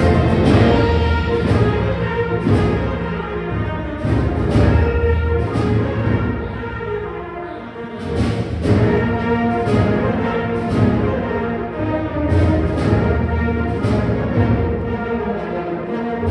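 A student wind ensemble playing: sustained brass and woodwind chords over regular percussion strikes, easing to a softer passage a little before halfway and then swelling back to full volume.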